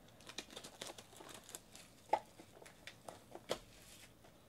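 Cellophane shrink wrap crinkling and crackling as it is peeled off a trading-card box, in scattered small crackles with a sharper snap about two seconds in.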